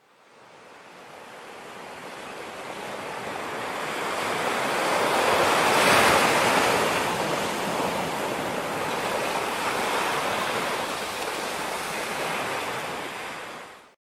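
Steady rush of water that fades in from silence, is loudest about six seconds in, then holds and fades out near the end.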